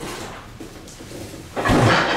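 Large cardboard shipping boxes being handled and pulled open, with a loud, rough burst of cardboard noise starting about one and a half seconds in.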